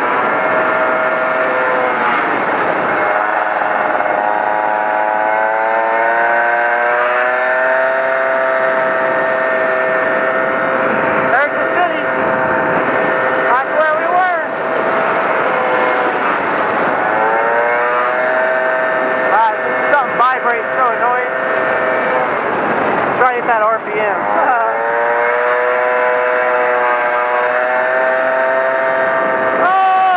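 Honda PA50II Hobbit moped's small two-stroke engine running under way, its pitch climbing and levelling off several times with short dips and quick flicks as the throttle changes, over a rush of wind and road noise.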